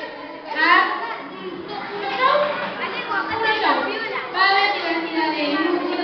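Speech only: a woman talking into a microphone, with children's voices.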